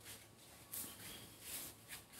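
Quiet: a few faint, short rustles and brushes of sound, typical of leaves and handling against a phone as it is moved.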